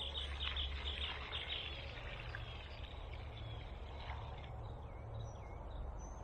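Small birds chirping: a quick run of short high chirps in the first second and a half, then scattered single calls, over a steady low outdoor rumble.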